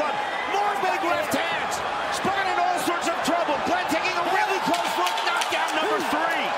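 Several voices shouting and yelling at once in a fight arena, with sharp knocks scattered through it.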